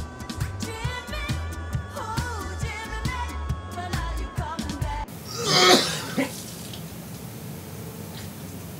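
A song with a wavering, singing-like melody over a low beat cuts off abruptly about five seconds in. Then a man retches once, loudly, over a sink, and only quiet room tone follows.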